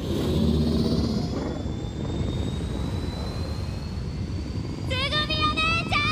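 A vehicle engine runs with a steady low rumble and a faint whine that rises slowly in pitch. A voice calls out near the end.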